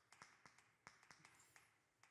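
Faint taps and scratches of chalk writing a short word on a chalkboard, a few separate clicks spread over two seconds.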